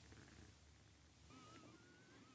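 Near silence: room tone in a pause between spoken sentences, with a faint wavering thin tone starting about two-thirds of the way in.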